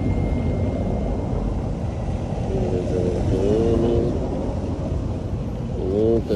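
Steady low rumble throughout, with faint voices talking in the background around the middle.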